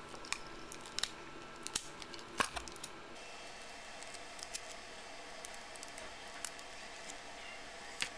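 Clear adhesive tape being handled and wrapped around a 9-volt battery to hold a laser module on: a few faint sharp crackles and clicks in the first three seconds, then quieter handling with small ticks.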